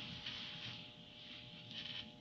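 Quiet room tone with a faint, steady electrical hum, and no distinct sound event.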